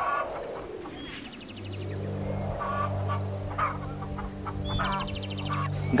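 Chickens clucking several times in short calls, over a steady low drone that sets in about a second and a half in.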